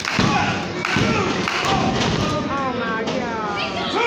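Referee's hand slapping the wrestling ring mat in a pin count, with sharp thuds about a second apart, over shouting voices. In the second half a long drawn-out yell rises and falls in pitch.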